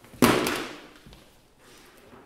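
A single loud, sudden thud that dies away over about half a second, followed by a few faint small knocks.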